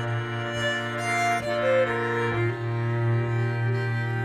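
Instrumental passage of a slow folk ballad: a fiddle bows the melody in held notes over a steady low bowed drone.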